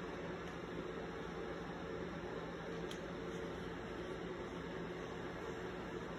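Steady low hiss and hum of room tone, with one faint click about three seconds in.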